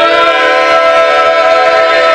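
Barbershop quartet of four men's voices singing a cappella in close harmony, holding one long, steady chord.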